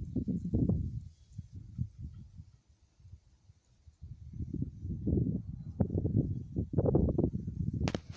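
Wind buffeting a phone's microphone in irregular low rumbling gusts, dying down for a couple of seconds in the middle and picking up again.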